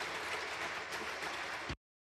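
Audience applauding, a steady even clatter of many hands, which cuts off abruptly near the end.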